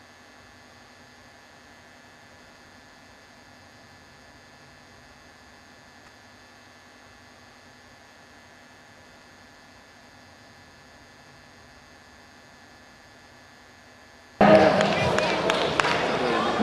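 Faint, steady electrical hum and hiss with several constant tones. About fourteen and a half seconds in it cuts suddenly to loud hall noise: a crowd talking, with voices.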